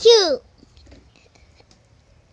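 A child's high voice speaks a short phrase right at the start. After that there is only quiet room sound with faint soft whispery noises.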